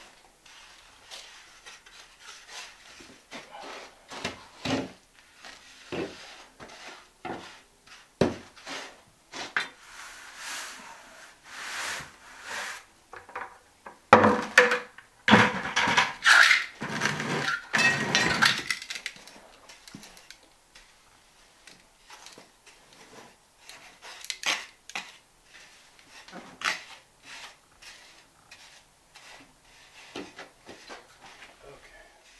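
Steel hand trowel scraping and scooping dry-pack deck mud (sand-cement mortar) across a concrete slab, in irregular short scrapes and knocks. The scraping grows busier and louder for several seconds about halfway through.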